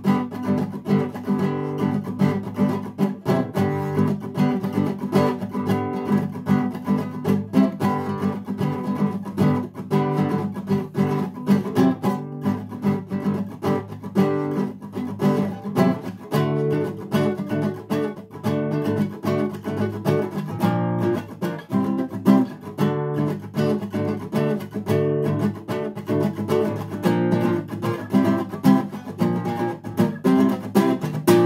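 Classical nylon-string acoustic guitar strummed in a steady rhythm, with the chords changing as the passage goes on.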